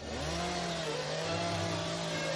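A small engine running steadily, its pitch wavering slightly.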